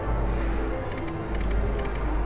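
Dragon Cash video slot machine playing its electronic spin sounds as the reels spin and land, with a few short ticks about a second in, over a steady low casino-floor hum.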